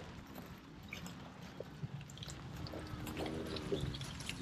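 Yearling cattle moving about close to the microphone on grass: soft rustling and small clicks, with a few faint, low moos in the second half.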